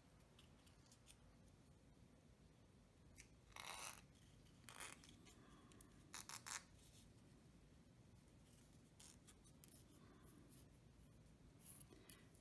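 Near silence with a few faint rustles and soft ticks of ribbon and foil cardstock being handled as the ribbon is threaded through a small punched hole.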